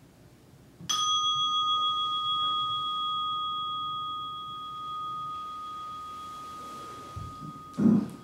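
A meditation bell struck once about a second in, ringing with a clear tone that fades slowly, marking the end of the sitting. Near the end, a brief low thump with cloth rustling as the seated meditator bows forward onto the cushion.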